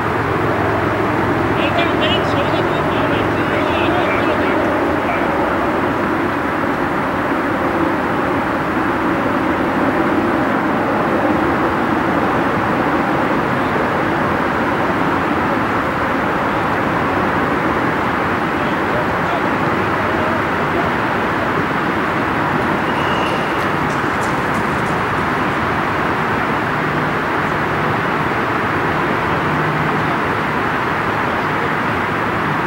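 A steady roar of road traffic, with faint, indistinct voices of players calling across the field.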